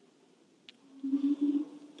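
A man's short, level hum on one low pitch, a hesitation "mmm", lasting about a second and starting about a second in, with a faint click just before it.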